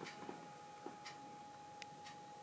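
Quiet room tone with a steady faint high hum and sharp faint ticks about once a second.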